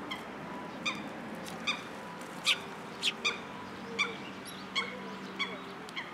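Eurasian tree sparrows chirping: about eight short, sharp chirps at irregular intervals.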